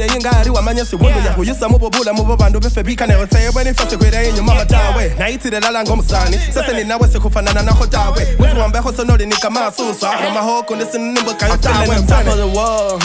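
Hip hop music: rapped vocals over a beat with deep bass notes that slide down in pitch. The bass drops out for about two seconds near the end.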